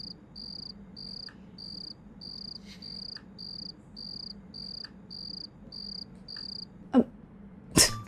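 Cricket chirping: a steady high-pitched chirp repeated about twice a second, the stock cricket sound effect of an awkward silence. The chirps stop about a second before the end, and a sharp click follows.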